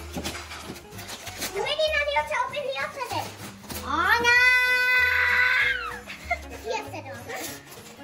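A young child's wordless voice, with one long high held cry from about four to six seconds in, over background music.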